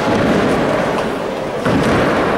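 Nine-pin bowling balls rolling down the lanes with a low rumble that carries through the reverberant hall, and a sharper knock near the end.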